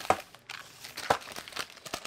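Clear plastic jewellery packets crinkling as they are picked up and moved about, with two sharper crackles, one right at the start and one about a second in.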